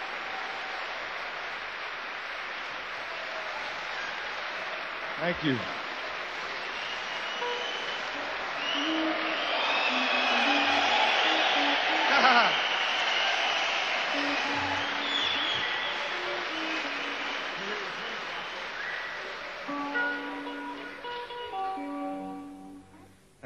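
Concert audience applauding and cheering with whistles, swelling in the middle and dying down near the end, when a few guitar notes are plucked.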